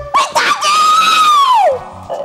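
A person's long, high-pitched scream, held for about a second and then falling away in pitch, after a couple of short cries at the start.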